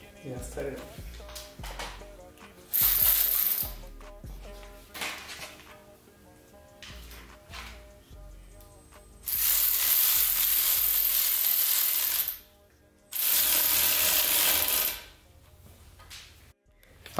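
Light metallic clicks of hand tools while a hose clamp on the heat-exchanger hose is tightened, over background music. Three loud bursts of steady hiss, about one, three and two seconds long, are the loudest sounds.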